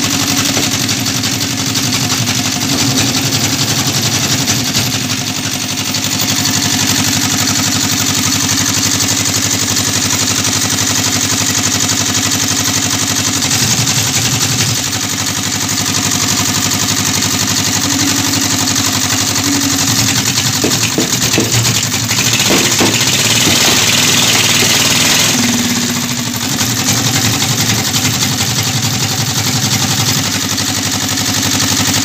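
Engine of a hydraulic firewood-splitting machine running steadily as its wedge is forced into a gnarled root stump, the note shifting a few times under load. A stretch of crackling about two-thirds of the way through as the wood splits apart.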